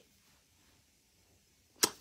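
Near silence for most of the moment, then a single sharp click near the end.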